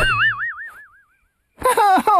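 A cartoon 'boing' sound effect: a quick rising twang whose pitch wobbles up and down as it fades over about a second. After a short silence, a man's wavering moan begins near the end.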